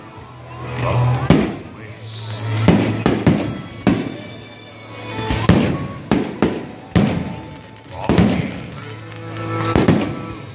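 Aerial fireworks shells bursting in the sky: a string of about a dozen sharp bangs at irregular gaps, some close together, over music playing.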